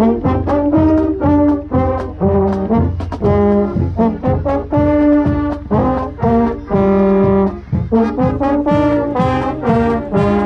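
High school marching band brass playing loud, short separated chords with a few longer held notes, with a trombone close to the microphone and sharp percussive hits between the notes.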